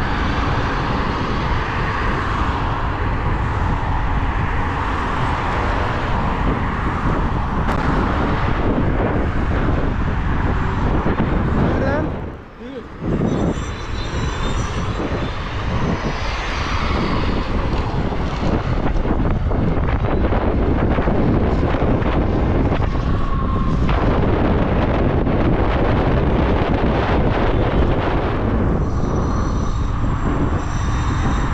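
Wind buffeting the microphone of a camera on an electric scooter moving at about 20–30 km/h, with road noise from the tyres. The rush drops out briefly about twelve seconds in.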